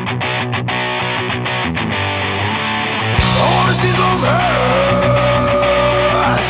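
Rock'n'roll band music: a distorted electric guitar riff, broken by short stops, until about three seconds in the full band comes in with drums and bass. Over it a long high note wavers and then holds steady.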